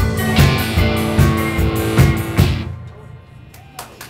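Live indie rock band of electric guitars, bass and drum kit playing the closing bars of a song, with steady drum hits, stopping together about two and a half seconds in; the final chord then dies away.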